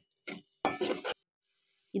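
Steel spoon stirring and scraping sautéed tomatoes in a metal pan: two short strokes, the second about half a second long, near the middle.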